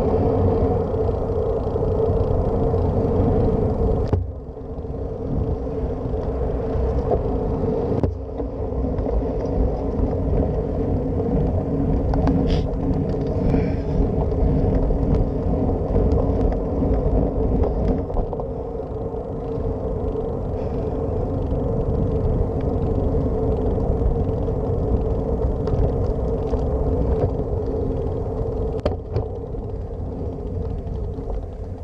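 Steady low rumble of wind buffeting a handlebar-mounted camera and bicycle tyres rolling on asphalt while riding, briefly dropping about four and eight seconds in.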